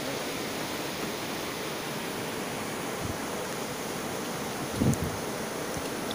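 Steady rushing of river water from a nearby waterfall, an even hiss with no breaks, and a brief low thump about five seconds in.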